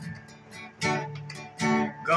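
Steel-string acoustic guitar strummed softly between sung lines, with two louder strums, one a little under a second in and one near the end.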